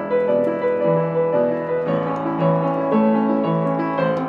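Kawai upright acoustic piano being played: a passage of held notes and chords, with a new note or chord about every half second.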